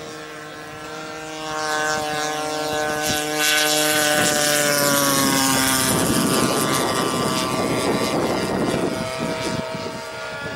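Radio-controlled model airplane's propeller engine running in flight, a steady buzz that grows louder a couple of seconds in as the plane comes closer. About six seconds in, the pitched buzz gives way to a noisier rushing sound as another model passes low.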